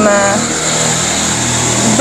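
A motor vehicle running nearby: a steady engine and road noise that carries on after a spoken word ends in the first half second.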